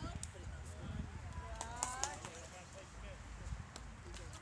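Background voices of spectators and players talking and calling out at a youth baseball game, with a few sharp clicks and a steady low rumble underneath.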